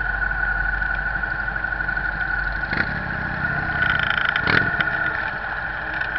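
Motorcycle engines running at low road speed in a group of cruiser motorcycles, with a short louder burst about three seconds in and a bigger one a second and a half later.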